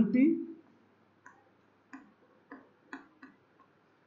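A word of speech ends, then five faint, short taps come at irregular intervals of about half a second: the sound of writing out an equation.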